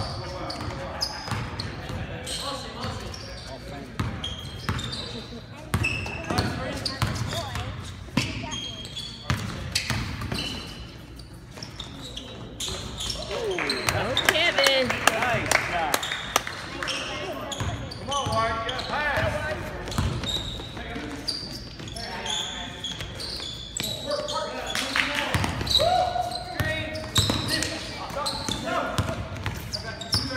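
Basketball game in a gym: a ball bouncing on a hardwood court in short sharp knocks, with indistinct shouts and chatter from players and spectators echoing in the hall. It grows louder and busier in the middle.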